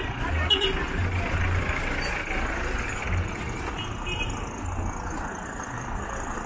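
Street traffic: motor vehicle engines running close by over a steady urban din.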